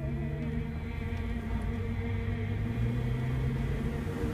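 A manual-transmission vehicle's engine, heard from inside the cab, pulling in a low gear: a steady droning hum whose pitch creeps up slightly.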